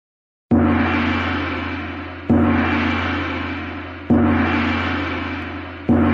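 Gong strikes in a played-back music intro: four strokes about 1.8 seconds apart, each ringing with a low steady tone and slowly fading.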